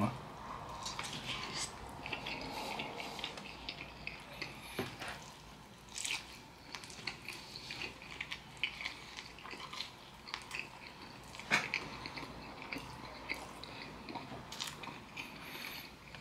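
A man chewing and biting a piece of breaded fried chicken topped with cheese and pepperoni, close to the microphone: faint irregular mouth clicks and smacks, with a few louder ones about six and eleven seconds in.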